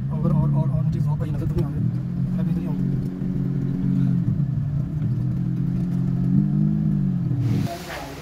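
Daihatsu Cuore's small three-cylinder engine running steadily at low revs while the car creeps along, heard from inside the cabin. The engine sound stops abruptly near the end.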